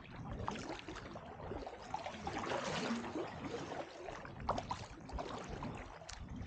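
Kayak paddle strokes through calm water, with splashing and drips from the blades, the loudest swish of water about halfway through.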